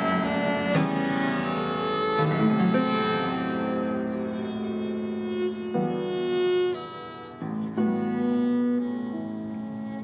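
Live duet of viola da gamba and pianoforte: the gamba bows long held notes over the keyboard's accompaniment, with the notes changing every second or two.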